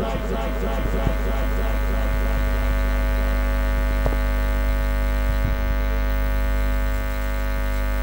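Public-address system giving out a steady buzzing drone, several tones held at once over a low mains hum, with a few faint knocks.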